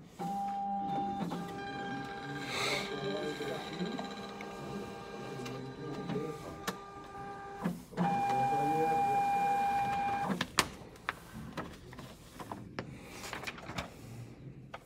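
ES&S ExpressVote ballot-marking machine printing a ballot card. The print mechanism whines steadily in two stretches, the second louder from about eight seconds in. It ends in a sharp click, followed by a few lighter clicks as the card feeds out.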